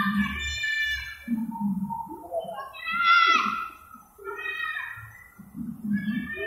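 Young children's high-pitched excited shouts and squeals, several separate cries one after another.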